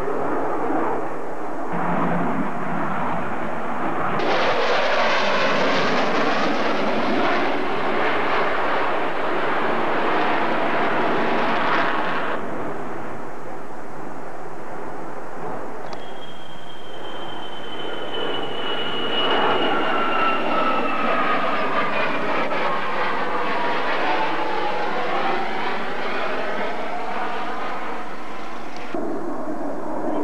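Aircraft flying past overhead, a loud rushing engine noise that swells about four seconds in and cuts off suddenly about twelve seconds in. A second pass follows with a high whine that slides slowly down in pitch as the aircraft goes by.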